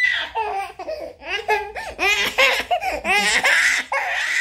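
A one-year-old baby laughing in a string of short, high-pitched bursts that rise and fall in pitch.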